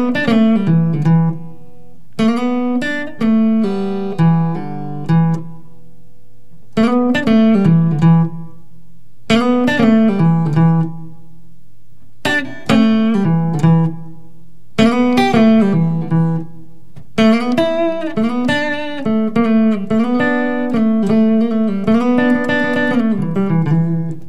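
Semi-hollow electric guitar playing short improvised blues licks in E, with sliding notes and pull-offs to open strings. The phrases come one after another with brief pauses between them, and the last and longest runs from about two-thirds of the way in to the end.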